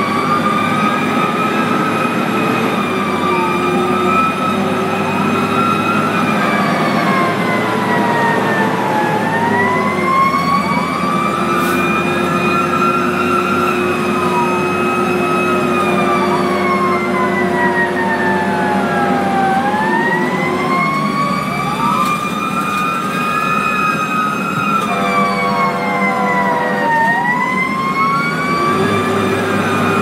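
Fire engine siren heard from inside the cab: a slow wail rising and falling over several seconds, with a faster second siren wail over it and the engine running underneath. Two long steady horn blasts come about halfway through and again near the end.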